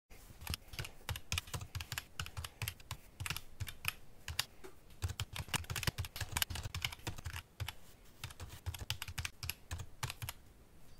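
Typing on a computer keyboard: a quick, uneven run of key clicks, with a brief pause about seven and a half seconds in.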